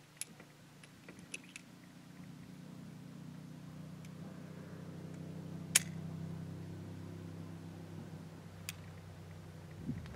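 Light metallic clicks of revolver cartridges and the gun being handled, the sharpest about six seconds in, over a low engine hum that swells up and then holds steady.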